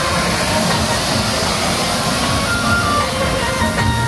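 Ground fountain fireworks giving off a steady hiss and crackle of sparks, with loud music playing over them.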